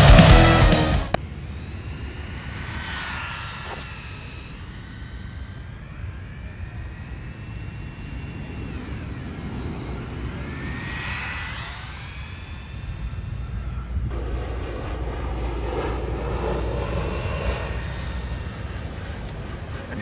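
Loud rock music cuts off about a second in. Then comes the high-pitched whine of the 1/24-scale GT24 rally car's 8000kv brushless motor, rising and falling in pitch as the car speeds up and slows around the lot. A low rumble sits under it in the last few seconds.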